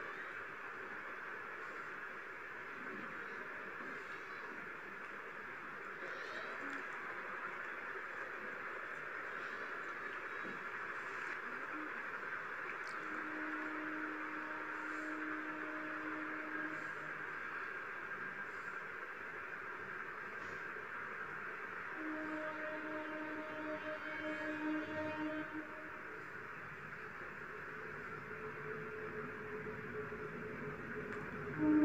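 Steady background hiss of the recording during silent meditation, with faint held low tones coming and going about halfway through and again later.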